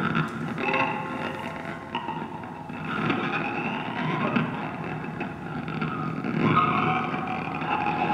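Improvised experimental music: wavering, sliding squeaky tones over a rough, grainy low rumble, with no steady beat.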